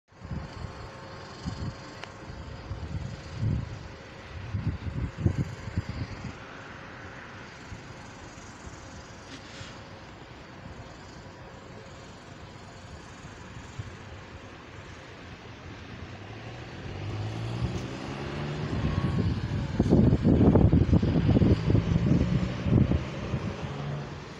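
A motor vehicle's engine rising steadily in pitch as it speeds up, getting louder until it is loudest in the last few seconds. Irregular low rumbles come and go in the first six seconds.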